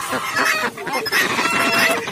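Market poultry calling: domestic ducks packed in a basket, with chickens among them, many calls overlapping without a break.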